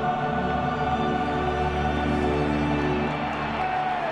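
Choral music over orchestral accompaniment, with long held chords that change slowly.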